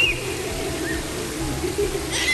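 Echoing indoor pool-hall ambience: a steady low ventilation hum under a continuous murmur of distant voices and children's calls. A short high-pitched child's cry comes right at the start.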